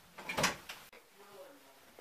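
A short, sharp noise about half a second in, then a sudden cut in the sound and faint, muffled voices.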